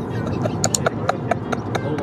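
A quick, even run of light clicks, about four a second, over a steady low rumble.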